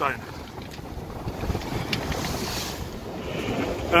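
Wind buffeting the microphone over water rushing along the hull of a Hawk 20 sailing day boat beating to windward in a swell. A louder hiss swells about two seconds in.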